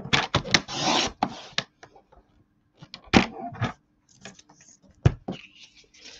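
Cardstock being handled and trimmed on a Stampin' Up paper trimmer: paper sliding and rustling against the trimmer base, with a quick series of clicks and a scraping slice of the blade in the first second or so, then a few sharp taps later on.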